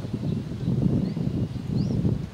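Wind buffeting the microphone, a low rumble that rises and falls unevenly, with two short rising bird chirps, one a little before halfway and one near the end.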